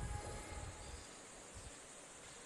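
Faint room tone: a steady soft hiss, with a few low bumps in the first second.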